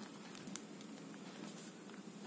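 Faint scratching and small ticks of a pen writing on paper, with one slightly louder tick about half a second in.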